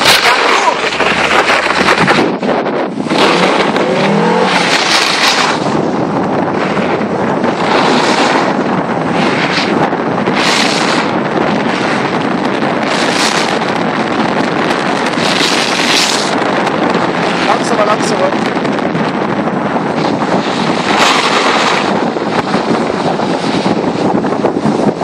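Audi 80 Avant quattro driving on a snow-covered road while towing a snowboarder on a rope: engine and tyres on snow under heavy wind rushing over the microphone held outside the car, with surges every second or two.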